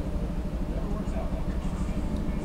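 A steady low rumble with no break or change.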